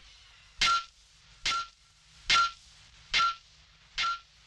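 Evenly spaced sharp metallic clanks, each ringing briefly at the same pitch, four of them a little more than one a second: a rhythmic percussion effect in the film soundtrack.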